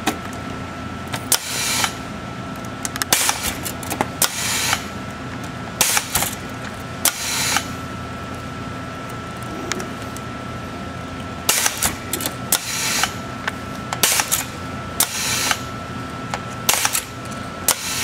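Gorman Machine Hustler hook winder pulling 10-gauge copper wire through a toroid core. Under a steady hum with a faint high whine, short bursts of noise come every second or so, some in quick pairs, as the foot-pedal booster cylinder pulls each turn.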